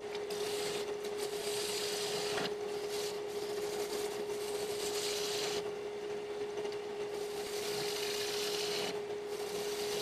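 Harbor Freight 34706 wood lathe running with a steady tone while a hollowing tool cuts inside a spinning olivewood bowl, a scraping hiss that swells and eases as the tool works the soft wood.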